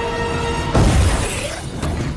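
Film soundtrack: held notes of dramatic score, then a sudden loud crash with shattering just under a second in, fading away.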